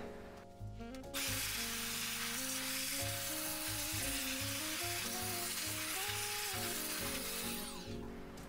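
Electric dust blower running: a steady rushing hiss that starts about a second in and dies away near the end, with background music underneath.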